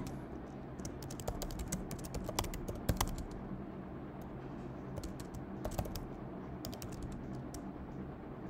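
Computer keyboard typing in irregular bursts of quick keystrokes, over a faint steady low hum.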